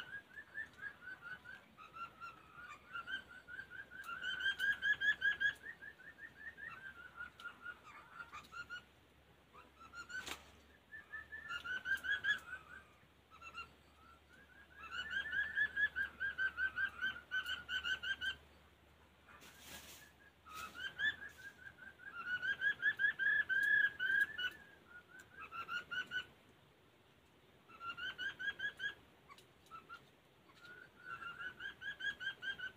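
Laughingthrush singing: phrases of rapid, warbled whistled notes, each lasting a few seconds, repeated after short pauses. There is a sharp click about ten seconds in and a brief rustle around twenty seconds.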